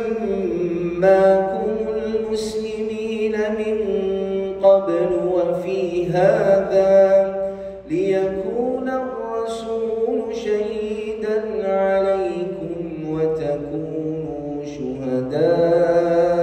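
A man reciting the Quran in Arabic in a melodic, chanted style, holding long, ornamented notes, with a short break for breath about eight seconds in.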